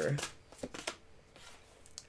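Cards being handled: a few soft clicks and slides of card stock about half a second to a second in, then very quiet.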